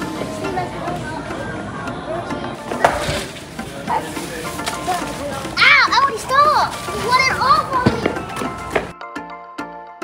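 High-pitched children's voices and busy shop noise over background music, the voices loudest in the second half. About nine seconds in, the noise cuts off and only the music is left.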